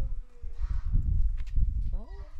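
A chained dog moving about on concrete, with a few sharp clinks and scuffs, over a steady low rumble.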